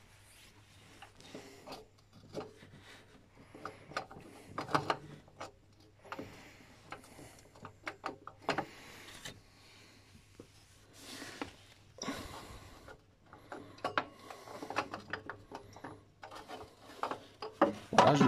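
Scattered light clicks, rubs and scrapes of metal parts being handled by hand, with a faint low steady hum underneath.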